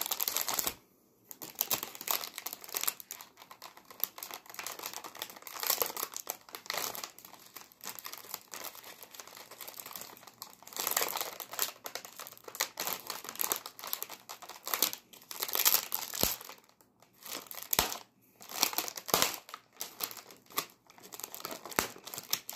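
Shiny plastic wrapper of an Oreo cookie pack crinkling in irregular crackly bursts as fingers tear it open.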